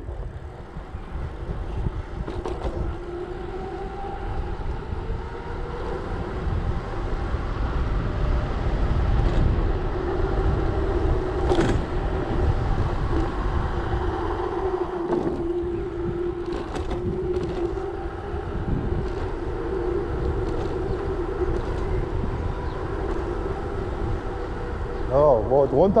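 Mountain bike rolling fast down a steep paved road: wind rumbling on the handlebar-mounted microphone and a steady hum from the bike that drifts slightly up and down in pitch with speed. A few brief clicks and knocks come through along the way.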